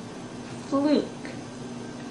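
A woman says a single practice word with the "oo" vowel, clearly and slowly, about two-thirds of a second in, its pitch falling at the end. A faint steady hum runs underneath.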